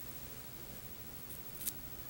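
Scissors being worked at the base of a pinch of rabbit fur on a Zonker strip, giving two faint, sharp clicks near the end of an otherwise quiet stretch.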